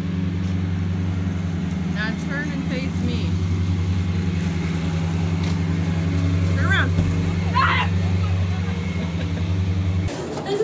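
A vehicle engine idling steadily, with a few brief high chirps about two seconds in and again near seven seconds.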